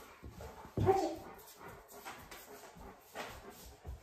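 A dog moving about on a hard floor, with a few faint, scattered light clicks.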